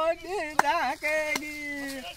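A man singing a Rajasthani folk song unaccompanied, with wavering ornamented notes, keeping time with two sharp hand claps. The phrase ends on one long held note that sinks slightly in pitch.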